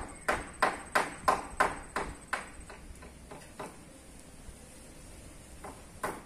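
Hammer blows on the timber roof frame, about three a second for the first two seconds or so, then a few fainter, spaced blows and one more near the end.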